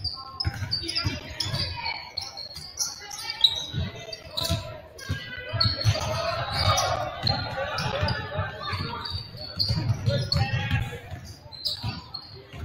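Basketball being dribbled on a hardwood gym floor, repeated thumps echoing in the hall, with sneakers squeaking and players and spectators calling out.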